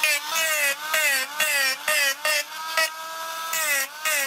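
Handheld rotary tool with a grinding stone cutting isolation grooves through the copper of a circuit board: a high motor whine that sags in pitch each time the stone bites into the board and picks up again, with a gritty grinding sound over it.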